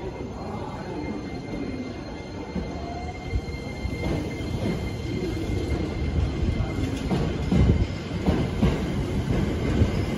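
Hankyu 7000-series train pulling into the platform. It begins with a thin, steady squeal, then wheels knock over rail joints as the cars come alongside, growing louder toward the end.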